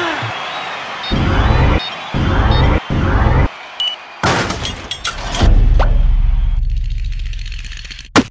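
Cartoon sound effects of a remote-detonated blast: three loud rising sweeps, then a sharp crash of crackling strikes about four seconds in, and a deep explosion boom that fades away over about two seconds.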